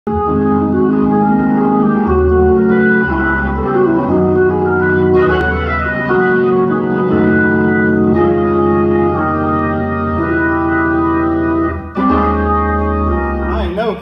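Organ playing sustained gospel chords over low held bass notes, the chords changing every second or so.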